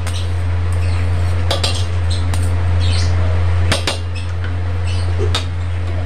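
Steel spoon clinking and scraping against a stainless-steel pot while milk is stirred to set curd, with a few sharp clinks scattered through. Underneath is a steady low hum.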